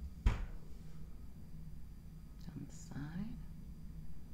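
A single sharp knock a fraction of a second in, then a short murmured vocal sound with some breathy hiss about two and a half seconds in, over a faint steady low hum.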